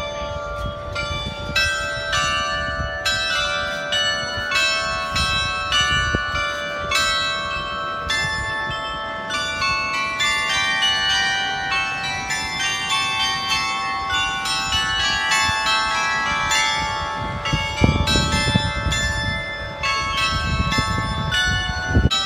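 Clock bells playing a melody, a run of struck notes ringing over one another, a tune the listener places in D major.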